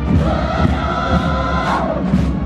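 Many voices in unison holding one long note for about a second and a half, over music with a steady low rumble and repeated low thumps.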